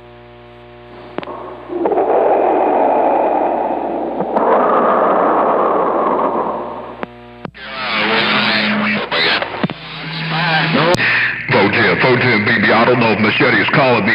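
CB radio receiver audio: a low hum with its overtones, then several seconds of loud rushing radio noise, then from about halfway garbled, overlapping voice transmissions with steady whistling tones under them.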